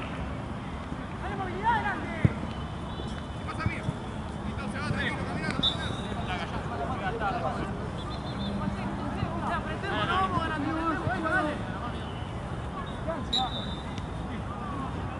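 Football players' scattered shouts and calls across the pitch over a steady background noise, with one sharp thump about two seconds in.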